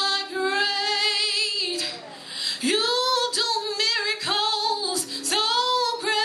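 A woman singing a gospel song solo into a handheld microphone, wordless and melismatic: one long note with a wide vibrato, then a run of shorter phrases that each slide up into the note.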